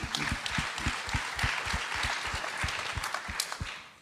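Audience applauding, a dense patter of many hands clapping that fades out near the end.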